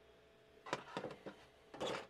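Handling of 3D-printed plastic sorter plates: a few light clicks and taps about a third of the way in, then a brief louder scrape near the end.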